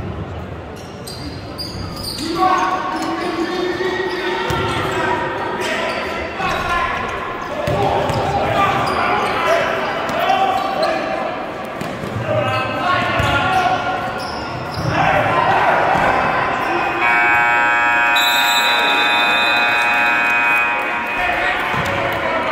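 Basketball bouncing on a gym floor, with players' voices echoing around a large gym. Near the end a steady, multi-pitched buzz from the gym's scoreboard horn sounds for about four seconds.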